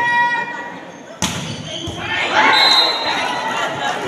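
A single sharp smack of a volleyball about a second in, ringing in the large hall, followed by shouting and cheering from players and spectators.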